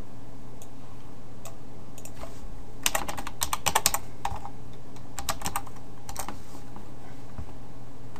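Computer keyboard being typed on: a quick run of keystrokes about three seconds in, then a few more keystrokes around five seconds and a last one near six. A steady low hum runs underneath.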